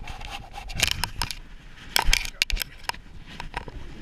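Rubbing and scraping handling noise with a run of sharp clicks and knocks, loudest about two seconds in.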